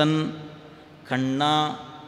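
A man's voice chanting a Tamil devotional verse in a melodic recitation with long held notes: one phrase ends just after the start, and a second held phrase comes about a second in.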